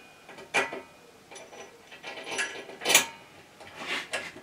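A few scattered metallic clinks and knocks from handling the lathe's cast-iron headstock and its parts on a workbench, the loudest about three seconds in.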